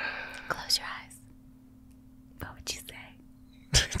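A breathy exhale into a close microphone, then a few soft mouth clicks and short breaths, before a man starts speaking near the end. A faint steady electrical hum lies underneath.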